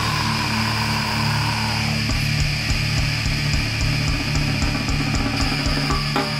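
Death metal played by a full band: distorted electric guitars, bass and drums, without vocals. Held low chords give way about two seconds in to a fast, driving drum and riff pattern, with steady cymbal strikes over it.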